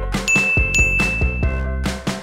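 Background music with a steady beat, over which a bright bell-like ding rings out about a quarter second in. It is struck again about half a second later and rings on until about a second and a half.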